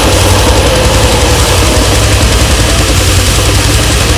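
Loud grindcore band music in a dense, low, rumbling stretch: heavily distorted guitars and bass with drums.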